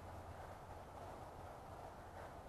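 Quiet outdoor background with a faint steady low hum and no distinct event.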